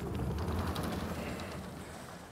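Sliding lecture-hall chalkboard panels being moved in their frame, a steady rolling rumble that fades away over about two seconds.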